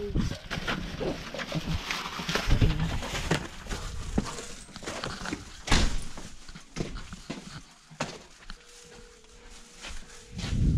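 Rustling of a handheld camera and footsteps, with scattered knocks and clicks as a person walks in through a house door. The loudest knock comes about six seconds in, and it is quieter near the end.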